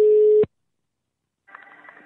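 Telephone ringback tone heard down the line: one steady beep about a second long, which ends about half a second in. Near the end faint line noise comes in as the call is picked up.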